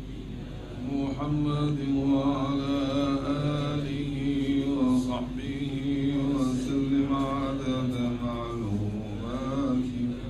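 Male Arabic chanting of a closing prayer of blessing on the Prophet (salawat), starting about a second in and sung on long held notes.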